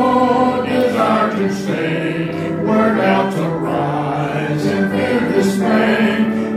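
A slow gospel hymn sung by voices with keyboard accompaniment, the singing moving through long held notes.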